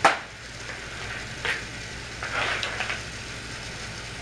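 Plastic toy train track pieces being handled, clicking and rattling: one sharp click at the start, then scattered clatter about one and a half and two and a half seconds in.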